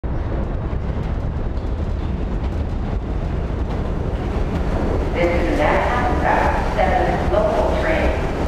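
Subway train running with a steady low rumble. About five seconds in, wavering higher tones join it.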